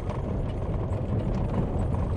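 Car driving along an unpaved dirt road, heard from inside the cabin: a steady low rumble of tyres and road, with many small ticks and knocks from the rough surface.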